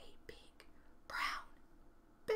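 A woman's short whisper about a second in, breathy with no voiced pitch, over quiet room tone.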